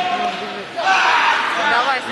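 Several people shouting in a large sports hall, with overlapping voices that swell into a louder burst about a second in.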